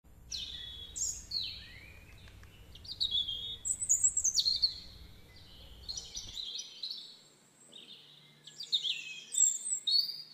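Small birds chirping and singing, a run of quick high notes that sweep downward, in bursts throughout. A low rumble runs beneath the first six seconds and cuts off suddenly.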